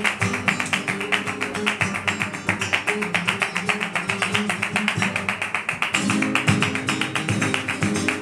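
Two flamenco guitars played together in a fast, driving rhythm with sharp strummed strokes, joined by flamenco hand clapping (palmas) in time.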